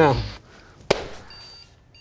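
A single sharp click about a second in, followed by a short, high electronic beep.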